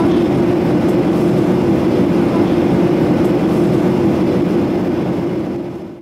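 Steady cabin noise inside a Boeing 737-800 in flight: the drone of its CFM56-7B jet engines and the airflow, with a strong steady hum. It fades out in the last second.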